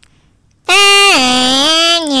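Near silence for about the first half second, then a loud, sustained melodic tone that slides down from a higher note to a lower one, holds it, and starts gliding back up near the end.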